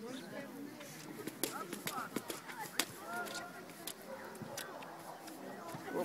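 Faint shouts and calls of players and spectators carrying across an outdoor football pitch, with a few scattered light clicks.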